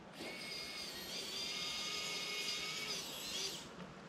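A small electric motor whines at a steady pitch for about three seconds. It starts just after the beginning, steps up slightly a second in, and cuts off about half a second before the end.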